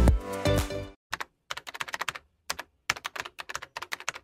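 Music fading out within the first second, then keyboard typing clicks: short, sharp, irregular keystrokes, a few a second.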